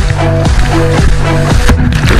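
Soundtrack music with a steady, fast beat and short repeating notes over held bass tones; it breaks briefly near the end.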